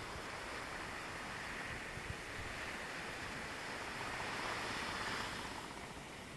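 Surf breaking and washing up a sandy beach: a steady rush that builds to its loudest about five seconds in, then drops away.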